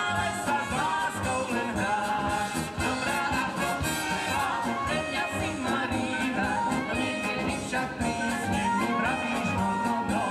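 Live brass band playing: trumpets and saxophones over tuba and drum kit, with a steady beat.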